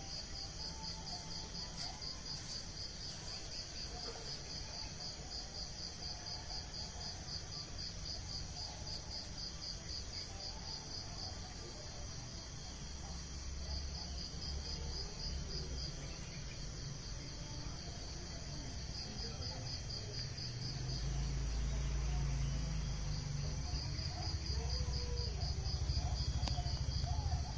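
Insects trilling in a fast, even pulse train, high-pitched and steady, with a few short breaks. A low rumble swells in the last few seconds.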